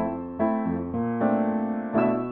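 Piano playing chords, about four struck in turn, each ringing on and fading until the next.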